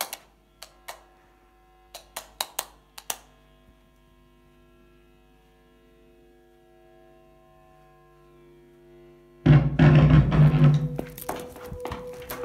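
A few sharp knocks in the first three seconds, then a steady low drone of several held tones. About nine and a half seconds in comes a sudden loud crash lasting a second or so, followed by a few more clicks.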